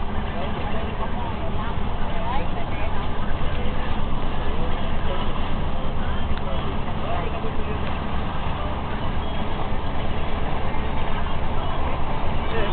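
Car interior road noise at highway speed: a steady low rumble of tyres and engine heard from inside the cabin, with faint voices under it.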